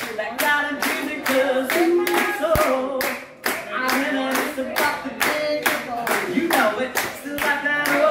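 Hands clapping in a steady rhythm, about three claps a second, with voices singing along and no instruments playing.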